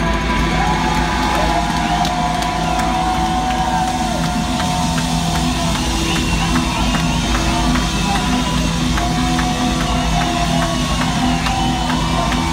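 Live rock band playing an instrumental passage of the song, with drum kit, bass, keyboard and guitar, and the crowd cheering over it.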